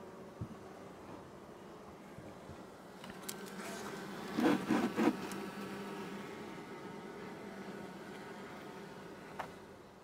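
Honeybees buzzing in an open hive, a steady hum that swells louder about halfway through as the top cover comes off.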